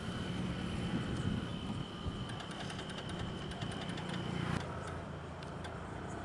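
Motorcycle engine idling steadily at a low level, with a faint, thin high tone behind it that stops about four and a half seconds in.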